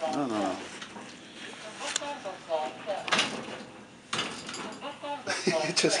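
Short stretches of a voice talking, with a few sharp clicks and knocks in between.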